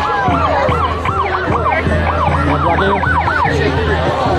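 A siren in a fast yelp, its pitch sweeping up and down several times a second and stopping shortly before the end, over a steady low hum and crowd noise.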